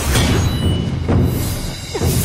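Dramatic soundtrack music with heavy drums, with swishing whoosh effects from sword swings and spins about a second in and again near the end.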